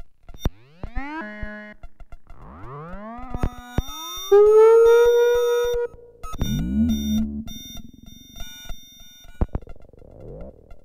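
Electronic music made of synthesizer tones that slide upward in pitch and then hold, over scattered clicks. The loudest part is a held tone from about four to six seconds in that cuts off suddenly, followed by a lower, buzzing passage.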